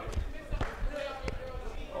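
Basketball dribbled on a hard outdoor court: a few separate bounces, with voices in the background.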